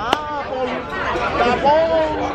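Chatter of many diners talking at once in a crowded restaurant, with a single sharp click just after the start.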